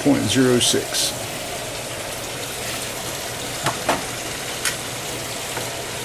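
Steady background hiss with a few faint clicks about midway, after a last word or two of speech at the start.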